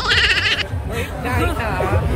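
A woman's high-pitched laugh in quick pulses, breaking off about half a second in, followed by voices talking.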